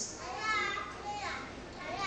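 A young child's faint, high-pitched voice, a few short vocal sounds, the last one falling in pitch.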